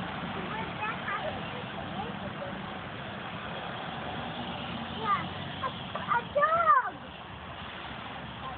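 Young children's wordless high-pitched calls, a few short ones near the start and a louder run of rising-and-falling calls over a steady low background rumble, which drops away just after the loudest call.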